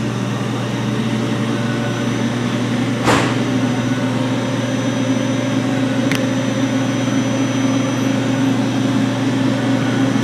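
A steady machine hum, with a short knock about three seconds in and a faint click about six seconds in.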